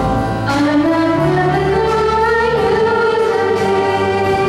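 Middle school jazz band playing with saxophones and horns while a female vocalist sings; the melody climbs over the first couple of seconds into a long held note.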